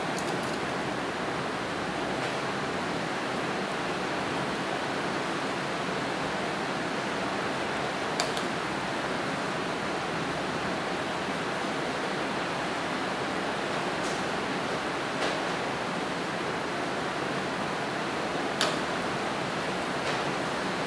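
Steady, even hiss of background noise, with a few faint soft ticks scattered through.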